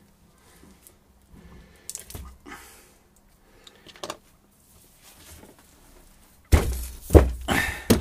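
Faint handling as lumps of plastiline modelling clay are pressed into place, then near the end a sudden heavy thunk as a large roll of plastiline is set down on the wooden workbench, followed by a short laugh.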